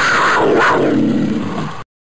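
A big cat's roar, played as a sound effect, that cuts off abruptly near the end.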